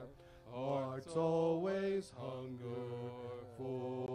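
Men's voices singing a slow hymn, in held notes with short breaks between phrases.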